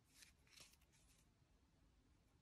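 Near silence, with a few faint soft rustles in the first second as a needle and yarn are drawn through crochet stitches to weave in the yarn end.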